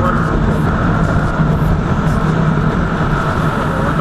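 Motorcycle engine running at a steady cruising speed, with low wind rumble on the microphone. The exhaust has its dB killer removed.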